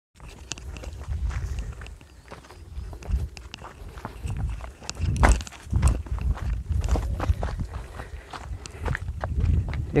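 Footsteps crunching irregularly on a dry dirt path through dry grass, with a low rumble on the microphone.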